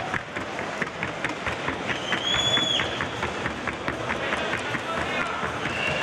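Hoofbeats of a Colombian Paso Fino filly at the trot: a fast, even run of short sharp strikes, about five a second. A brief high steady tone sounds once about two seconds in, over a background of crowd chatter.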